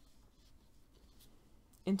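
Faint rustling and light scratching of a crochet hook drawing yarn through stitches, with a woman's voice starting to speak near the end.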